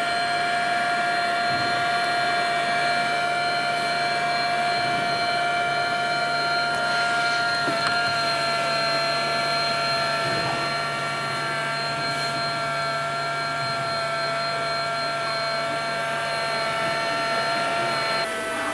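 HumminGuru ultrasonic vinyl record cleaner running with its basin empty of fluid, the record spinning: a steady motor whine made of several high tones over a low hum.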